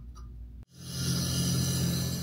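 A low steady hum with a couple of faint clicks, then a sudden cut about two-thirds of a second in to a logo sound sting: a whooshing rush with a deep low tone that swells up and holds.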